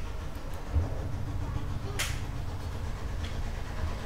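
Steady low background rumble, with one sharp click about two seconds in and a couple of faint ticks near the start.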